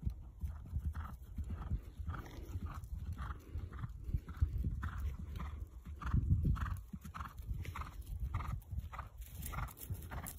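Horse landing from a small jump and cantering on over grass: hoofbeats in a steady rhythm of about two strides a second over a low rumble.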